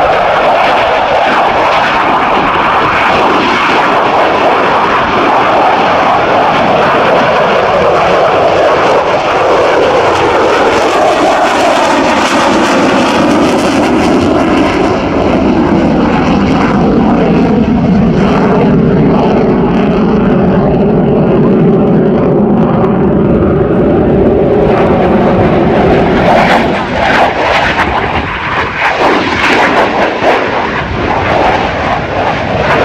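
F-16V fighter's Pratt & Whitney F100 turbofan at high power, a loud continuous jet roar as the aircraft climbs. About halfway through, the roar shifts lower into a steady drone with slowly falling pitch, and near the end it briefly dips and sweeps down.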